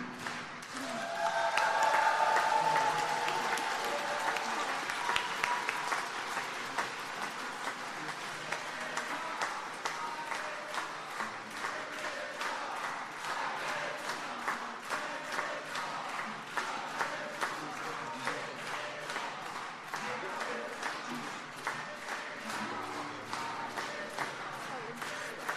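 A congregation applauding, loudest in the first few seconds and then settling into steady clapping with individual claps audible. Voices are mixed in.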